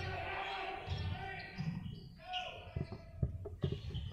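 A basketball being dribbled on a hardwood gym floor, with a quick run of bounces in the second half, under faint voices in the gym.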